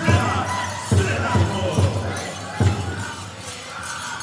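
Powwow drum group playing a grand entry song: heavy, unevenly spaced beats on the big drum under high-pitched singing, with dancers' bells jingling throughout.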